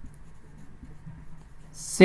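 Felt-tip marker writing on a whiteboard, faint rubbing strokes as a word is written out.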